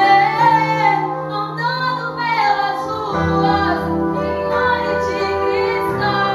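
A young woman sings a worship song into a microphone over held accompaniment chords. The chords change about halfway through.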